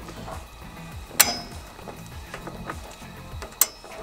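Two sharp metallic clinks with a brief ring, about a second in and again near the end, from the steel parts of a portable Blackstone propane griddle being handled as it is set up, over soft background music.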